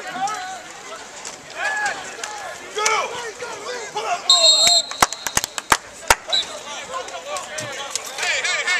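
Football players and coaches shouting outdoors, with a referee's whistle blown once, short and shrill, a little past the middle to end the play. Right after it comes a quick run of about seven sharp cracks.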